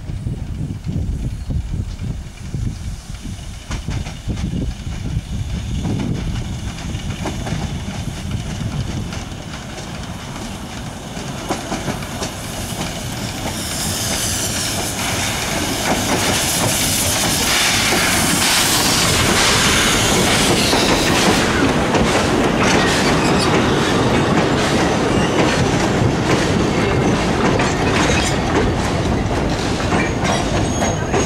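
Narrow-gauge steam train approaching and passing close by. It grows much louder from about halfway, when a high-pitched hiss rises over the running noise. Then its carriages roll past with the wheels clicking.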